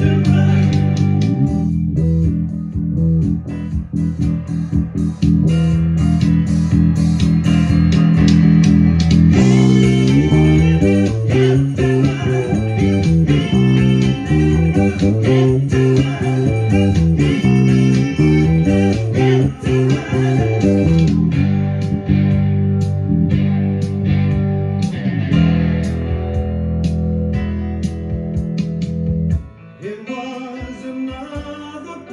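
A Gibson EB-4L electric bass played along with a rock band recording in an instrumental passage with no vocals. The bass holds long low notes at first, then about ten seconds in moves into a busier line of quickly changing notes before the music drops away sharply near the end.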